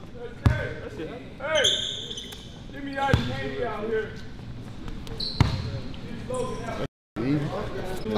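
A basketball bouncing on a hardwood gym floor, three hard bounces a couple of seconds apart, with short high sneaker squeaks in between and players' voices chattering in the hall.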